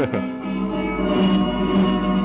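Recorded flamenco guitar playing a cartagenera, heard through the lecture hall's speakers: a few plucked notes, then a sustained note from about half a second in.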